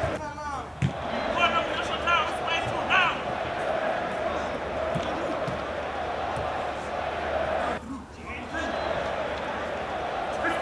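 Footballers shouting short calls to each other during a small-sided game on artificial turf, with the thump of a ball being kicked about a second in. A steady hum runs underneath.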